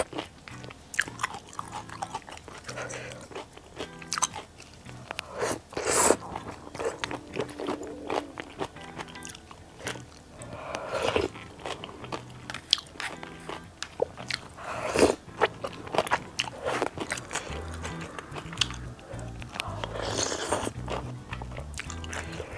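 Close-miked eating of jjajang tteokbokki: wet chewing of chewy rice cakes, glass noodles and dumplings in thick black-bean sauce, with small utensil clicks and a few louder mouth-noise bursts, over soft background music.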